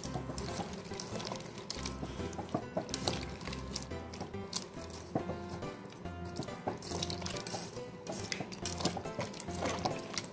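Background music with a steady bass line, over soft wet squishing of salted sliced radish being kneaded by hand.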